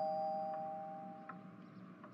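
Two-note ding-dong doorbell chime ringing out, its two tones fading away over about a second and a half.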